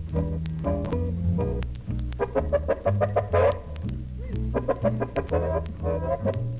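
Small jazz combo of accordion, guitar, flute and double bass playing live swing. A walking bass line steps under quick melodic runs.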